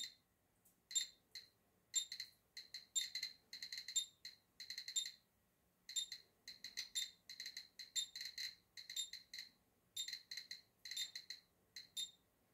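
Handheld radiation meter beeping irregularly, a short high chirp for each detected count, coming in uneven clusters of several a second. It is registering a radioactive sample at about 2 microsieverts an hour.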